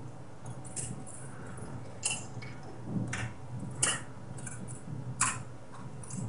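Several light, irregular clicks and taps of plastic and metal as hands seat and clip a CPU heatsink and fan onto a motherboard inside a computer case.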